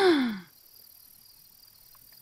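A woman's voice slides down in pitch and trails off about half a second in, the end of a startled gasp. After it only a faint steady high chirring of crickets remains.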